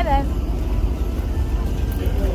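Wind buffeting a phone microphone outdoors: a steady, low, fluctuating rumble.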